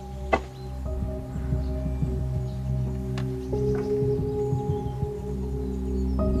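Background film score: a low sustained drone under several held tones, with a new note coming in about halfway through and a short click just after the start.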